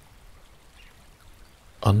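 Faint, steady trickling of a small stream, with a soft-spoken voice coming in near the end.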